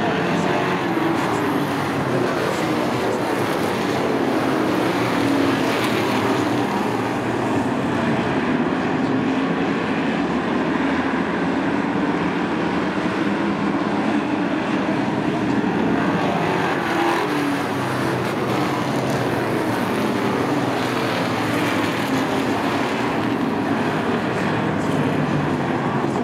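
A pack of Sportsman stock cars racing on a short oval: many engines running together in a continuous drone that wavers as the cars pass.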